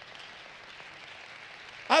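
Faint, steady room noise in a pause between spoken lines. A man's voice starts near the end.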